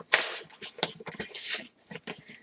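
A large cardboard box being opened by hand: two bursts of tearing and rustling, with small clicks between.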